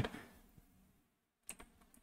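Computer keyboard being typed on: two faint keystrokes about one and a half seconds in.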